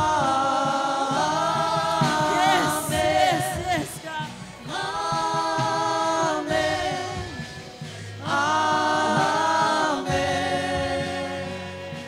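Live church worship band: several voices singing long held phrases in harmony over electric guitar and bass guitar, in three phrases with short breaks between them.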